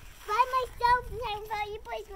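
A young child talking in a high voice, a few short phrases whose words are not made out.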